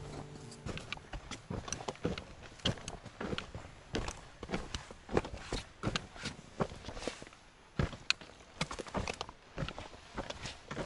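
Footsteps on loose, dry dirt, an uneven run of steps scuffing and crunching along the trench floor.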